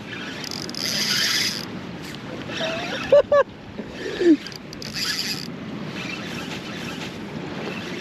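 Short wordless exclamations from an angler fighting a freshly hooked snapper: two quick ones about three seconds in and a falling one a second later. Under them run steady wind and water noise and a few bursts of high hiss.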